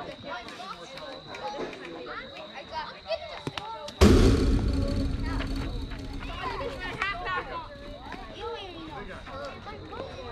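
A sudden loud thump about four seconds in, followed by a low rumble dying away over two or three seconds, over scattered voices.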